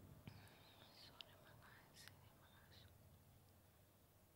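Near silence with faint whispering and small mouth clicks close to a handheld microphone, mostly in the first three seconds.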